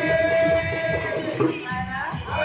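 A man's voice chanting a folk song: a held sung note fades out about a second in, and a new sung phrase starts near the end.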